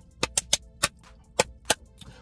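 About seven sharp hand claps at an uneven pace, a quick run of them followed by a few spaced-out ones, like a build-up before an announcement.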